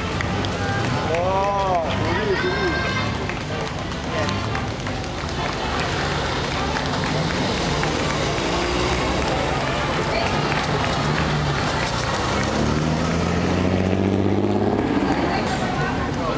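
Classic car engines run past a roadside crowd, with voices talking over them. Near the end, an engine note rises steadily as a car speeds up and pulls away.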